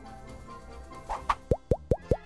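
Soft background music, then a cartoon transition sound effect in the second half: three quick rising bloops about a fifth of a second apart.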